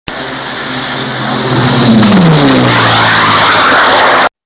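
An engine passing at speed: its pitched note falls about two seconds in while a rushing noise swells and then stays loud.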